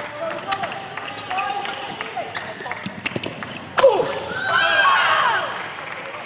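A badminton rally: sharp racket hits on the shuttlecock and short squeaks of shoes on the court. A loud hit about four seconds in ends the point, followed by about a second of players shouting in celebration.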